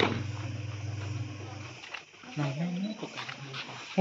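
A steady low hum that cuts off a little under two seconds in, followed by a short low voice sound from a person.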